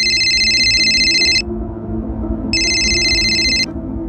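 Mobile phone ringing with a fast electronic trill, twice: the first ring stops about a second and a half in, and the second follows a second later. Low background music drones underneath.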